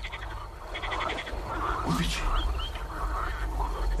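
Frogs croaking in a night-time ambience, with a rapid pulsed croak about a second in and a few short chirps later. A man briefly speaks one word about two seconds in.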